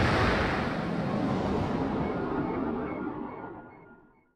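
Tokusatsu explosion sound effect of a target blown apart in the sky by a beam: a deep rumbling blast that dies away steadily and fades out near the end.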